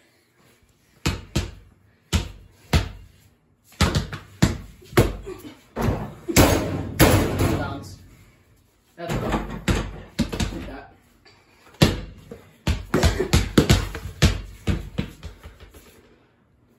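A basketball being dribbled and bouncing on a hard floor: a series of sharp, irregular thuds, some in quick pairs.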